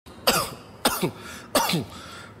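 A person coughing three times in quick succession, a little over half a second apart, each cough falling in pitch as it trails off.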